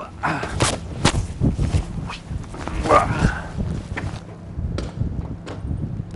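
Hurried footsteps and knocks of a person running out onto a deck, with a short, bending cry about three seconds in.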